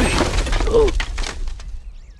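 Cartoon crash effect of a toy spring-rider plane collapsing onto pavement: a clattering, breaking crash whose rattling pieces die away.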